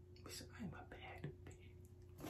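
Soft whispered speech: a few faint, breathy syllables in the first second and a half, then quiet.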